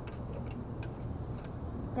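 Low, steady outdoor background rumble, like distant traffic, with a few faint clicks.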